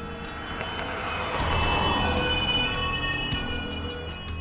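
An ambulance van driving past: its road noise swells to a peak about halfway through and fades as it moves away, under background music with sustained tones.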